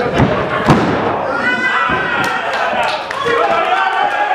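A wrestler's body slamming onto the canvas of a wrestling ring: two heavy thuds within the first second, the second the louder, followed by voices.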